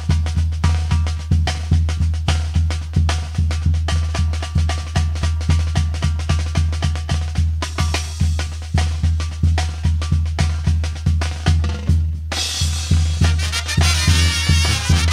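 A Mexican brass band's percussion, snare drums and bass drum, plays a steady, driving beat over a low bass line. About twelve seconds in, the horns come in with the full band.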